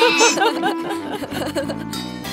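A girl and an old man laughing together over light background music; the laughter ends about halfway, and low, evenly spaced music notes follow.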